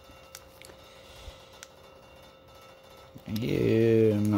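Foil and wax baseball card packs handled in gloved hands: a few faint, sharp clicks and light rustling of the wrappers as the packs are shuffled. A man's voice starts near the end.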